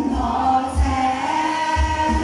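A group of voices singing together into microphones over backing music with a low, regular bass beat.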